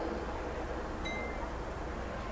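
A single short, high chime about a second in, over a steady low background hum.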